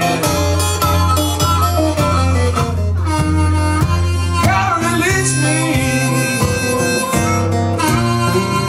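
Harmonica playing a lead line with bent notes over a strummed acoustic guitar.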